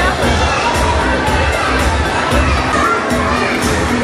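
Loud crowd babble from an audience of children and adults in a hall, many voices talking and calling out at once, with music playing underneath.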